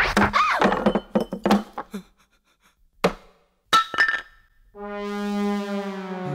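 Slapstick film sound effects: a quick cluster of thuds and knocks, then two sharp single knocks about three and four seconds in. Near the end a held brass chord from the film score comes in.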